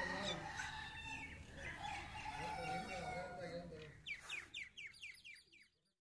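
Fowl calling, with pitched, wavering calls for the first few seconds, then a quick run of about seven short falling chirps near the end.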